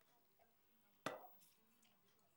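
An orange being squeezed by hand over a glass: one short, sharp squelch about a second in, against near silence.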